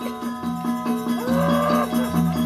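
Balinese gamelan playing a quick, even run of metallophone strokes over steady ringing tones. A little over a second in, a long drawn-out call rises in pitch and then holds for most of a second above the music.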